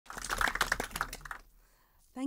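Scattered hand clapping from a small audience, a quick run of irregular claps that dies away about a second and a half in.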